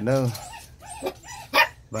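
Phu Quoc Ridgeback puppies making a few soft yips, then one short, loud bark about one and a half seconds in.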